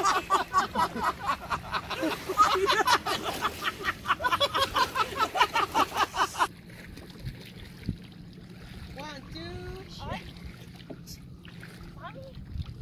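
High, rapid voices of a group in the water, ending abruptly about six and a half seconds in. After that the sound is much quieter, with faint voices and lake water.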